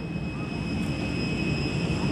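Steady jet aircraft noise on the tarmac: a low rumble with a thin high whine above it, slowly growing louder.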